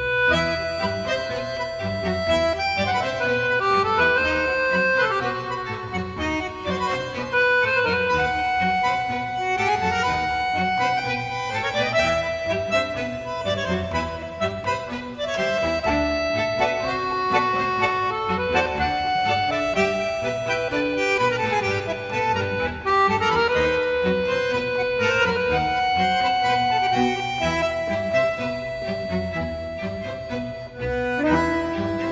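Accordion playing a melody of long held notes over a steady band accompaniment, in an instrumental tango-orchestra dance recording.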